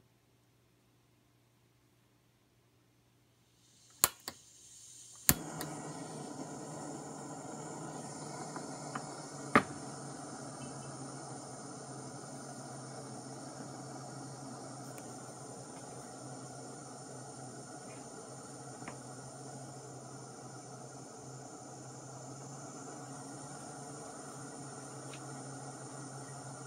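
Near silence, then a gas canister stove's valve opens with a building hiss, two sharp clicks about a second apart light it, and the burner runs steadily with a broad rushing sound under a stainless steel coffee maker. A single sharp knock comes about ten seconds in.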